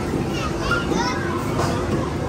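Children playing, their high voices calling and chattering over a steady din of many voices.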